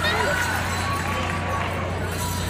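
Indistinct voices in a large arena over a steady low hum.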